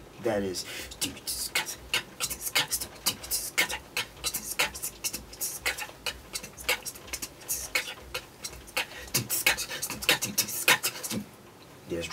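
A funk drum groove imitated with the mouth, beatbox-style: a quick rhythm of sharp clicks and hissing hi-hat-like ticks, played fast enough to turn into a drum and bass beat.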